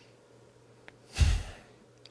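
A man's single short exhale, a sigh into a close microphone, about a second in; otherwise quiet.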